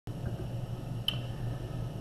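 Steady low background hum, with one sharp click about a second in.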